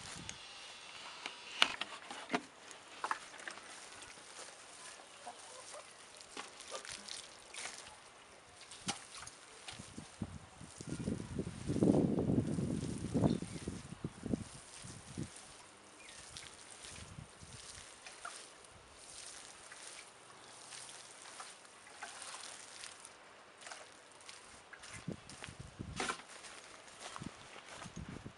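Water splashing from a watering can's rose onto soil and mulch, loudest for about three seconds in the middle. Scattered light rustles and clicks run through the rest of it.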